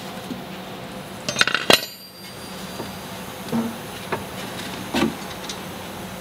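Steel wrench clinking and knocking against the car's steel suspension parts while the ball joint's locking bolt is worked loose. A cluster of sharp metallic knocks with a short ring comes about a second and a half in, then a few lighter single knocks.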